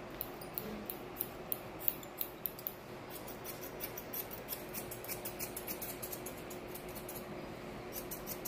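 Grooming scissors snipping a Yorkshire terrier's facial and head hair: crisp snips about two or three a second for the first few seconds, then lighter, quicker snipping.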